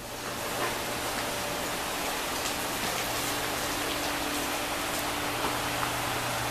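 Greenhouse circulation fans running steadily: an even hiss of moving air over a low motor hum.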